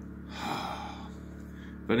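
A man breathes out audibly, one breathy exhale about half a second long shortly after the start.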